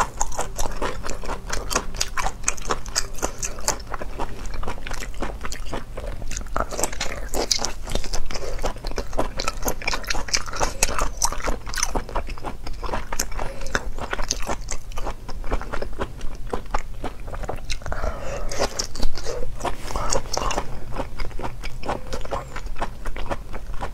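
Close-miked mouth sounds of chewing raw clam sashimi: a dense run of wet clicks and smacks, with a louder bite about eight seconds in and another near the end.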